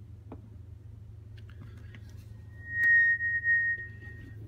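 Microphone feedback through a small guitar amp used as a PA: a single high ringing tone swells in about three seconds in and holds steady for over a second, over a steady low hum. The speaker puts the feedback down to the room's hard surfaces bouncing the signal back with the volume turned up.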